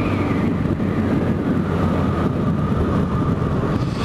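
Motorcycle engine running at a steady cruising speed, a constant engine note under the rush of wind and road noise on the camera microphone.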